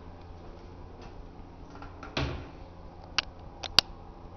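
A dull knock about halfway through, then three sharp clicks close together near the end, over a steady low hum.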